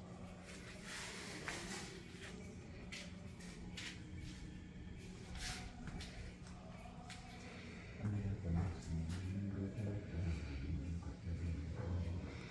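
Room ambience: a steady low hum with scattered small clicks and rustles, and from about eight seconds in a louder, indistinct low murmur of voices.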